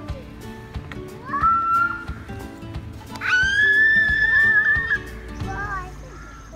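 A young child's high-pitched squeals going down a playground slide: a shorter rising one about a second in, then a louder, long one held for nearly two seconds from about three seconds in. Background music plays underneath.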